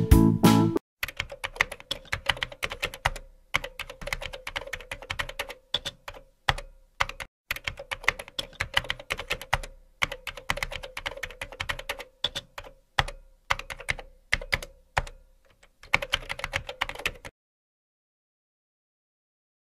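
Computer keyboard typing: rapid key clicks in runs separated by short pauses, stopping shortly before the end. A last bit of music ends less than a second in.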